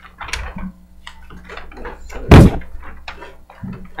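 Rustling and handling of large paper plans on a meeting table, with one loud, sudden thump a little over two seconds in.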